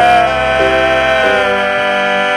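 The closing held note of a gospel song: men's voices sustain the last word over a steady held chord from the accompaniment. The top sung note drops away a little past halfway while the chord rings on.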